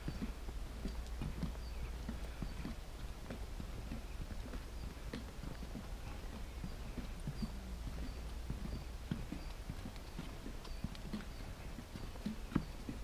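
Footsteps on a wooden boardwalk: a walker's shoes knocking on the planks at a steady walking pace, about two steps a second.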